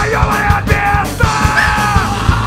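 Hardcore punk band playing live: a singer yelling long held lines over fast drumming and bass guitar.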